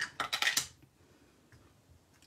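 A quick run of light plastic clicks and taps from handling a black ink pad and a clear acrylic stamp block, all within the first second.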